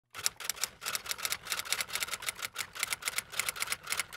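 Typewriter keys clacking in a fast, uneven run of several strikes a second.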